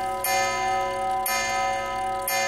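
Clock chime striking the hour: two ringing bell strokes about a second apart, each ringing on until the next, part of the clock striking four.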